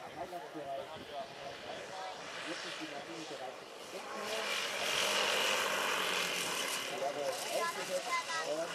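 Propellers of a large radio-controlled scale model DC-6B airliner, a four-engine model, as it comes in to land and touches down, getting loudest from about halfway through as it passes closest. People talk in the first half.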